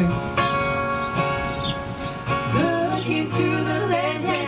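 Live acoustic music: a song played on acoustic guitar with a singer, a long held note early on and the voice moving again in the second half.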